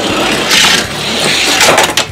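Die-cast Hot Wheels cars rattling at speed along an orange plastic track, a dense clatter of small wheels on plastic, with a few sharper clacks near the end.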